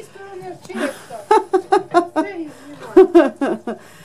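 A woman's voice talking, with chuckling.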